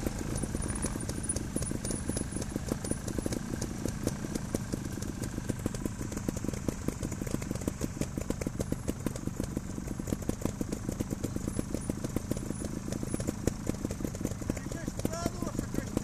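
Trials motorcycle's single-cylinder engine idling steadily with an even, rapid putter.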